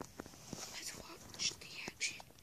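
A child whispering, with a few faint clicks.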